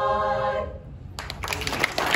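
Women's a cappella barbershop chorus holding the final chord of the song, cut off about half a second in. After a short pause, audience applause starts just over a second in.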